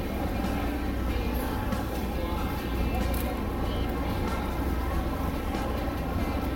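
Busy fish market ambience: a steady low rumble with indistinct voices in the background.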